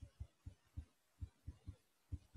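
Near silence, broken by faint, soft, low thumps at about four a second, unevenly spaced.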